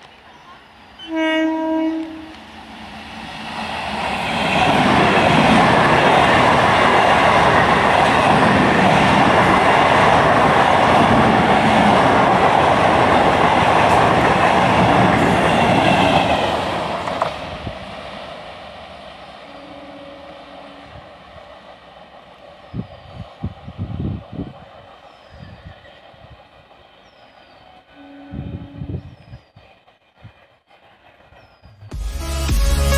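Electric multiple unit local train sounding a short horn blast, then passing close by with loud wheel-on-rail and running noise for about twelve seconds before fading away. Shorter, fainter horn notes follow later.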